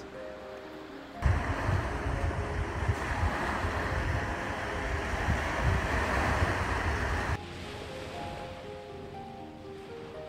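Soft background music, broken from about a second in by some six seconds of loud, steady outdoor rushing noise, strongest in the low end, before the music carries on alone.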